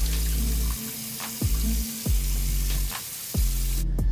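Water from a kitchen faucet running steadily and splashing over hair into a stainless steel sink, with background music carrying a deep, repeating bass beat. The water sound cuts off suddenly near the end.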